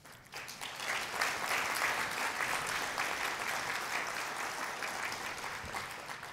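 Audience applauding, swelling in the first second and dying away near the end.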